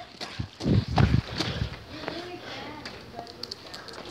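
A few muffled low thumps about a second in, then faint, distant voices and scattered light clicks.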